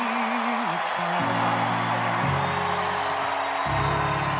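Roland stage piano playing slow sustained chords that change about every second and a half, over steady crowd noise.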